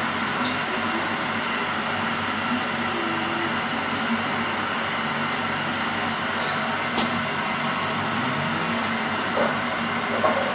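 Steady hum and even rushing noise of a kitchen appliance running, with a faint click about seven seconds in.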